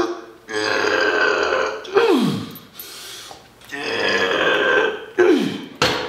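A man's loud, forceful exhales and groans as he strains through two reps of a cable tricep extension. Each is a long breathy sound ending in a falling groan: the noise he makes on purpose when exhaling on the effort, which he says makes him 20% stronger.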